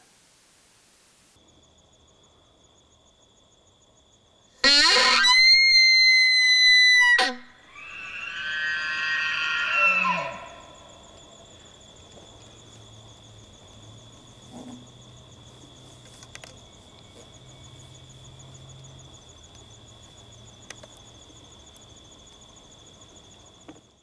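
Elk bugling. A loud, high whistling call starts about five seconds in and lasts some two and a half seconds. A second call swells after it and ends with a falling drop near ten seconds in. A faint steady high tone runs underneath.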